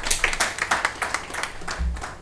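A small audience clapping briefly: a scatter of separate hand claps that thins out near the end.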